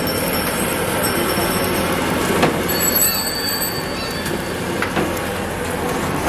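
Hot oil sizzling steadily in a large wok of deep-frying dough-coated chicken balls. A thin, high squeal joins in around the middle for about a second and a half, and there are two short clicks.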